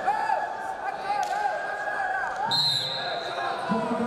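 Wrestling-hall ambience: several voices calling out at once over the steady murmur of a large hall, with a brief high whistle-like tone about two and a half seconds in.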